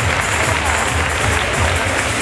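Audience applauding as a winner is declared, over background music with a steady beat.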